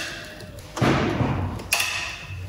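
Wrench work on a stripped Hyundai G4NA 2.0 engine block: a heavy thud about a second in, then a sharp metallic clank with a brief ring near the end, as the mechanic works toward the crankshaft main bearings.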